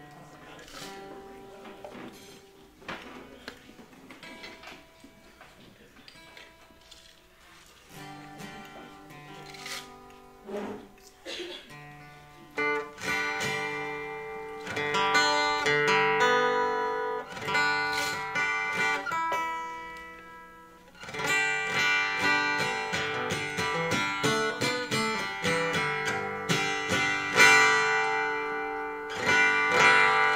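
Steel-string acoustic guitar: single strings plucked one at a time and left to ring, as in re-tuning, then strummed chords that grow louder from about halfway, with a short break about two-thirds of the way through.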